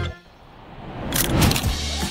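A whoosh transition sound effect: a rushing noise that swells for about a second after the music cuts off and peaks sharply around the middle. Low background music comes back in near the end.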